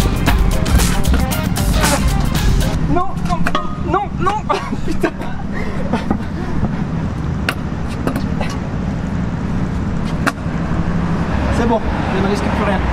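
Background music that cuts off about three seconds in, then a freestyle scooter rolling on pavement under steady street and wind noise, with brief voices and a couple of sharp knocks.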